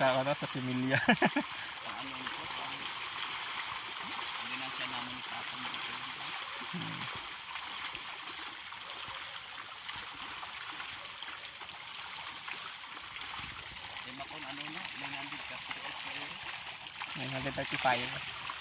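A shoal of milkfish splashing and churning at the water surface as they feed under a pond feeder: a steady, rushing splash like running water.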